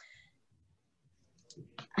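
A quiet pause after a trailing spoken "um", with a few faint short clicks near the end, just before speech resumes.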